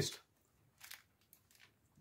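A faint, soft bite into a steamed meat bun held in a paper wrapper, with a brief rustle a little under a second in.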